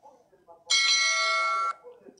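An electronic bell-like chime, an app sound effect from the live stream. It holds one steady ring for about a second and starts and stops abruptly.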